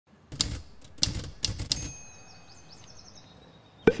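Typewriter sound effect: a few quick pairs of key strikes, then, just under two seconds in, a high bell ding that slowly fades out.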